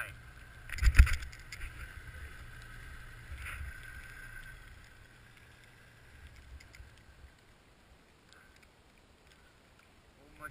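Snowmobile engine idling at low level, with a sharp thump on the microphone about a second in; the idle fades quieter after about five seconds.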